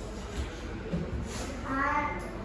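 A young boy's voice: after a pause, a short high-pitched vocal sound near the end, rising slightly in pitch.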